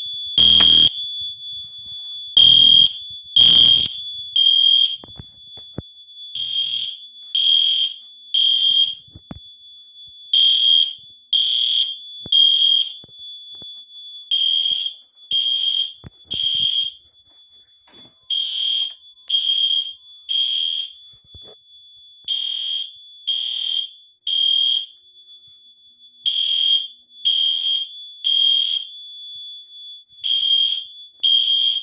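EST Genesis weatherproof horn sounding a high-pitched fire alarm evacuation signal in the temporal-three pattern: three beeps of about half a second, a pause of about a second and a half, repeating. The fire alarm system is in alarm during a test.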